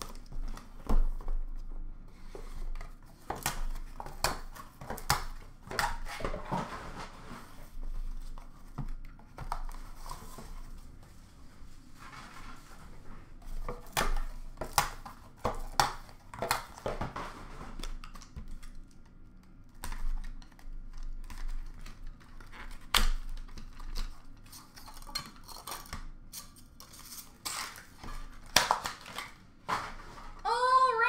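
Hands unwrapping and unpacking a sealed box of hockey cards: wrapping crinkling and tearing, and cardboard card boxes and packaging handled and set down with irregular clicks and knocks.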